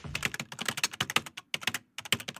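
Computer keyboard typing: rapid, irregular key clicks, about eight a second, with a short pause near the end.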